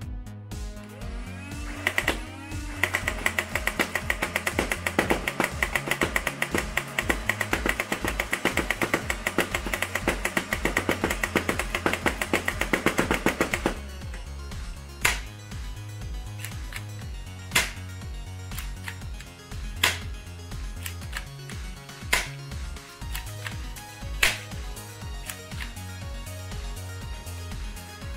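Background music over a long full-auto burst from a foam dart blaster, a rapid run of sharp clicks as darts are fired into a mesh catcher, lasting from about two seconds in to about fourteen. After that come single sharp hits every two seconds or so.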